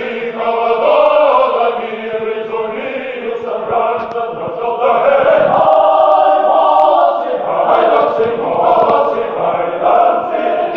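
Male choir singing a cappella in several parts, with full, held chords that move from one to the next, the fullest chord held in the middle.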